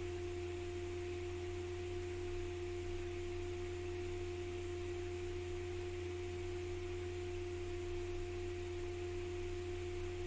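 A steady electrical hum: a pure, unchanging pitched tone over a low drone, with no other sound.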